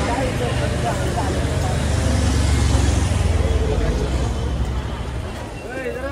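Busy street-market ambience: a steady low rumble of road traffic under the chatter of passing shoppers' voices, easing a little near the end.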